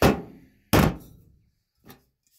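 Two heavy thunks about three-quarters of a second apart, then a light knock near the end, from glass liquor bottles being put down and picked up on a hard surface.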